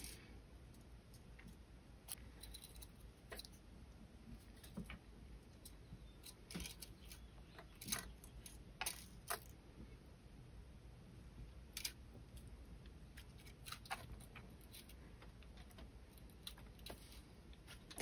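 Faint, irregular small ticks and clicks of thin copper weaving wire being pulled through and wrapped around thicker copper core wires by hand, over near silence.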